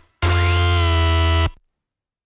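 Spire software synthesizer playing a single held note from a bass preset, heavy in the low end and rich in bright harmonics, which sweep upward at the start as the filter opens. The note lasts about a second and a quarter and cuts off, leaving silence.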